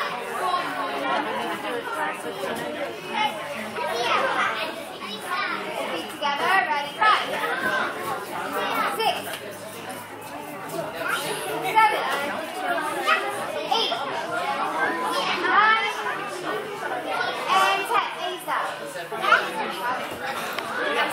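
Many overlapping voices of children and adults chattering in a large hall.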